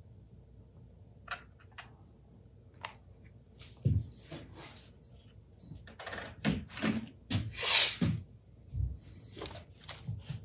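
Small parts and hand tools being handled on a workbench: scattered light clicks, taps and knocks, with a short, louder rasping rattle about eight seconds in.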